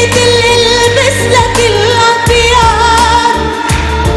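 Live Arabic pop song: a female voice sings a melody with ornamented turns over a band with steady bass and drums.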